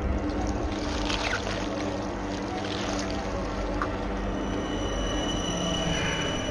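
Eerie horror-film underscore: a low, steady drone of held tones, with faint scratchy high sounds about a second in and a thin high tone entering past the halfway point.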